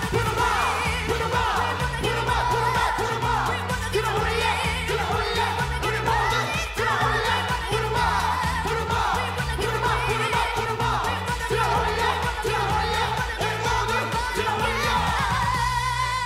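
Mixed male and female group vocals singing a dance-pop song live into handheld microphones over a backing track with a steady bass beat.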